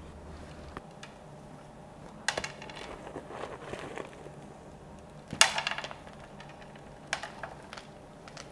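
Fresh potting soil being scooped and poured into a plant pot around a root ball, in three short bursts, the loudest a little past the middle.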